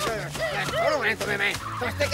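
Cartoon animal chattering: a quick run of short, high, squeaky calls, each rising and falling in pitch, about four or five a second.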